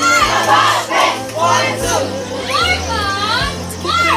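A crowd of young people shouting and cheering over music, with a few long rising-and-falling calls near the end.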